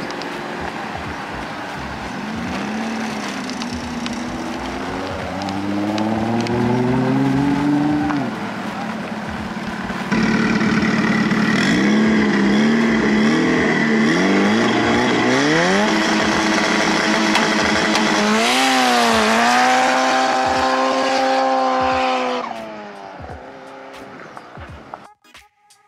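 Engine-swapped, turbocharged Porsche 911 accelerating hard: the engine note climbs through the revs and drops at each upshift, over several runs, and fades out near the end.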